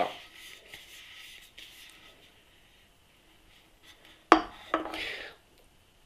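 A faint hiss fading away over about two seconds from freshly poured stout settling in the glass, then one sharp knock about four seconds in as the emptied 16-ounce aluminium beer can is set down on a wooden table.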